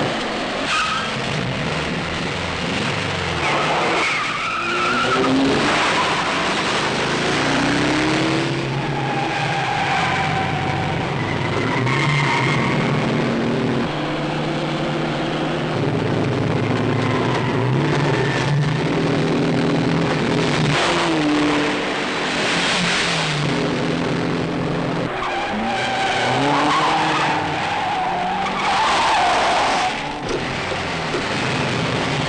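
Car chase: car engines revving hard, rising in pitch again and again, with tyres squealing and skidding on the turns.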